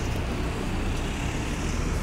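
Steady city street noise, a low traffic rumble with an even hiss over it.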